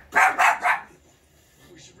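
A dog barking: three sharp barks in quick succession in the first second, then it stops.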